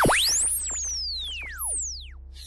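Synthesized electronic sound effect: a loud tone dives steeply and swoops straight back up at the start, followed by more overlapping falling and rising sweeps, over a steady low hum.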